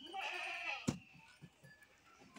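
A farm animal bleating once, a wavering call lasting most of a second, followed just under a second in by a single sharp knock.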